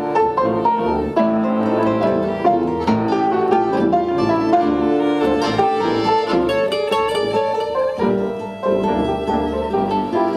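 Instrumental break in a song, played by a small acoustic band: violin and piano, with accordion, tuba, mandolin and acoustic guitar.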